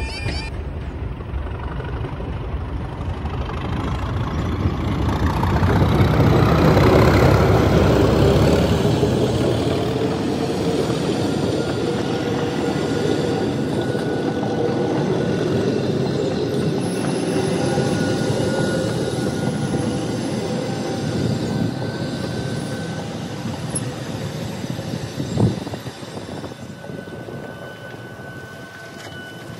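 Class 37 diesel locomotive with its English Electric V12 engine passing close by, the engine's deep rumble loudest a few seconds in, then dropping away. The coaches follow with a steady rolling rumble of wheels on rail, a single sharp knock near the end, and the sound fading as the last coach clears.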